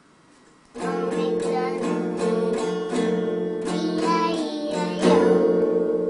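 A young child strumming an acoustic guitar and singing, starting about a second in after a brief hush.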